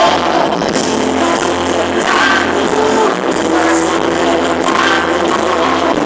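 A live gospel pop-rock band playing loud through a large stage sound system, heard from the audience: electric guitar, bass and drums, with singing.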